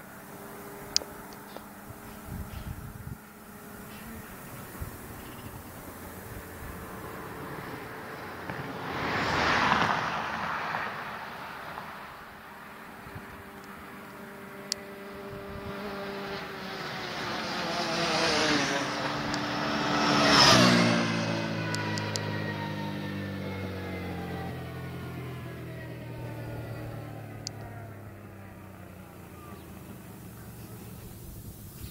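Vehicles passing at full throttle. One passes about ten seconds in. Then a high-revving engine note rises and passes loudest about twenty seconds in, its pitch dropping steadily as it goes away, most likely the racing Can-Am Outlander 800 ATV and Aprilia RS125 motorcycle passing a couple of seconds apart.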